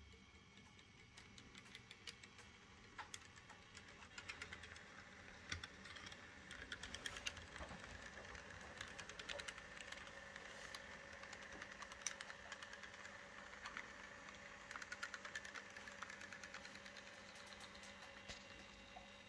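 Model DB Class 111 electric locomotive running on model railway track: a faint motor and gear whine with irregular clicking of the wheels over rail joints and points, the clicks thicker from about four seconds in.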